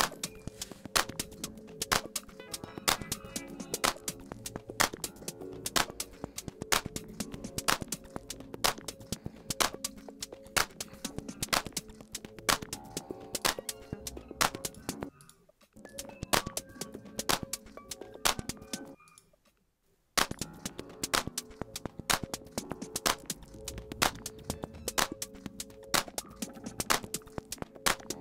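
Rominimal (minimal house) track playing back from Ableton Live: dense, sharp clicky percussion over a steady low tone. It thins out briefly about fifteen seconds in, then drops to near silence for about a second and a half before coming back in.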